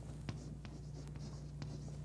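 Chalk writing on a chalkboard: short taps and scratches, over a steady low hum.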